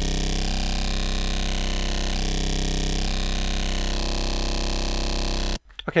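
Ableton Operator FM synthesizer sounding a single steady, bright held note: three square-wave oscillators modulated by a sine wave, the carrier sound for a vocoder. Its tone shifts slightly several times as the sine oscillator's level is turned. It cuts off abruptly near the end.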